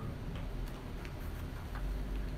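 Sermon papers handled at a wooden pulpit: a few light, irregularly spaced ticks and rustles over a steady low room hum.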